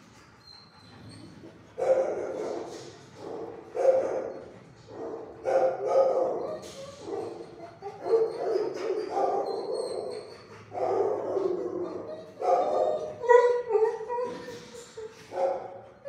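Shelter dogs in kennels barking over and over, starting about two seconds in, with a bark roughly every one to two seconds.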